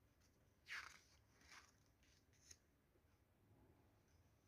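Faint rustles of stiff chart-paper pages being handled and turned in a ring-bound file: three short swishes in the first three seconds, the first the loudest, otherwise near silence.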